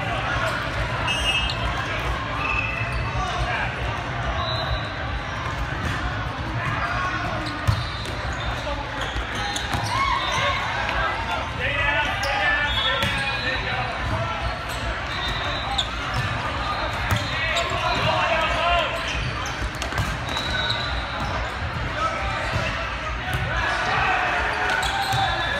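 Busy indoor volleyball hall: a steady din of many voices echoing in the large room, with balls being struck and bouncing on the courts and short high squeaks scattered through. One sharp ball strike stands out about eight seconds in.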